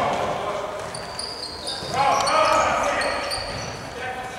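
Indoor futsal play in a sports hall: players shouting, short high squeaks and the knocks of the ball being kicked, echoing in the hall.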